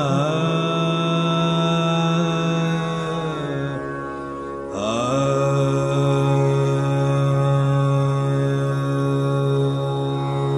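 Male Hindustani classical vocalist singing Raga Jog on open vowels, as in an alap: long held notes joined by slow downward glides. About four and a half seconds in the voice breaks off briefly, then slides up into a new note and holds it steadily.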